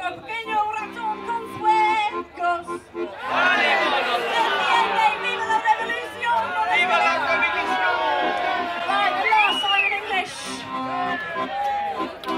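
Piano accordion playing held chords, joined about three seconds in by many overlapping voices from the audience.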